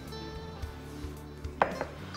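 A silicone spatula scraping chopped green tomatoes from a glass bowl into a stainless steel pot, with small clicks and one sharp knock about one and a half seconds in, over soft background music.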